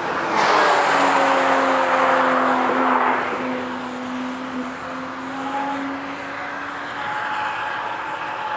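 A car driven hard on the circuit: its engine and exhaust noise rise suddenly about half a second in, hold loud with a steady engine note, then die down after about three seconds. A fainter engine is heard later.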